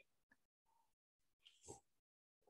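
Near silence, with one faint, brief sip from a mug near the end.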